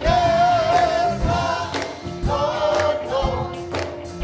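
Gospel praise team singing with music to a steady beat. A lead voice holds a long, wavering note at the start and comes in again about two seconds later.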